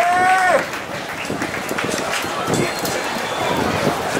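A saxophone note bends and falls off, stopping about half a second in. After it comes a steady, noisy mix of outdoor crowd sound and talk, with no clear music.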